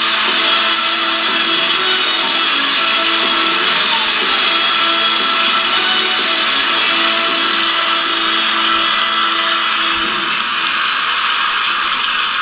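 Music from an awards-show band playing steadily, with a dense wash of noise underneath it.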